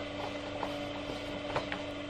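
A wad of paper sheets riffled by hand into a fan, the sheets flicking past one another in faint ticks, over a steady low hum.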